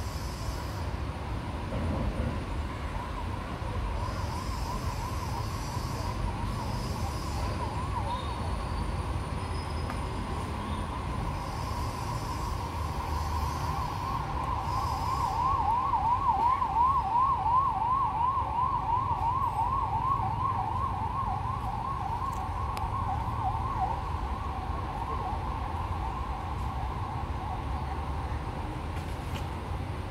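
A siren warbling in a fast up-and-down yelp, faint at first, loudest about halfway through, then fading, over a steady low rumble.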